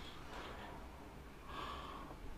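A man's faint breathing against low room noise, with a soft inhale near the end.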